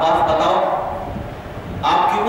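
A man's voice drawn out in a long, gliding melodic phrase, chanted or recited rather than spoken, through a hall microphone; the phrase fades and a new one starts sharply near the end.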